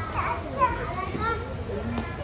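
Children's high-pitched voices calling and chattering at play, with one brief louder call about half a second in.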